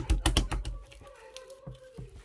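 Green slime squeezed and worked in the hands, giving a quick run of sharp clicks and small pops in the first second, then a few faint clicks.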